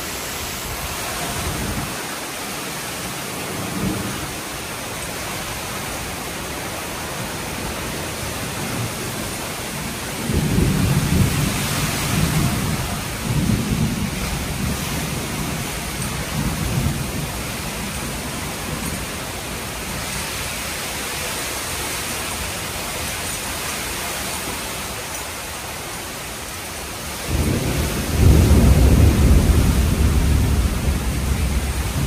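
Heavy tropical-storm rain pouring steadily, with thunder rumbling twice: a long rumble from about ten seconds in, and a louder one near the end.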